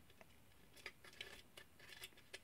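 Near silence, with a few faint light clicks from a screwdriver and small parts being handled.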